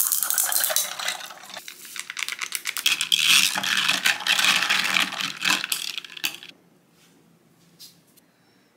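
Ice cubes clinking and rattling in a glass of iced drink, a quick, dense run of small clicks that stops about six and a half seconds in.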